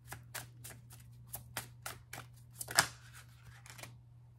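A deck of tarot cards being shuffled by hand: a quick run of card flicks and riffles, with one louder snap about three quarters of the way through.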